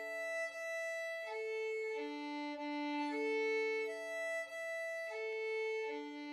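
Violin bowed in slurred string crossings from the D string to the E string, the bow rocking smoothly across the strings so that two notes overlap at each change. The notes change every second or so, with no break in the sound.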